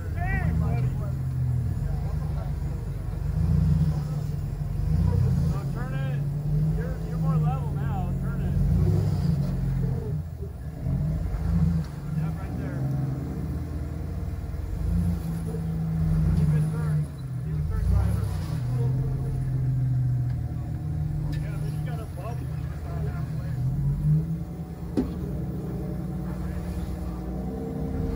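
Off-road rock crawler's engine working under load as it climbs a steep rock ledge, revving up and easing off again and again. Voices of onlookers are heard over it.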